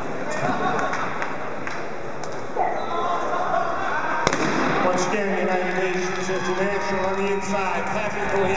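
Starting gun fired once for the start of a race: a single sharp crack about four seconds in, over steady arena crowd chatter. Music begins playing about a second after the shot.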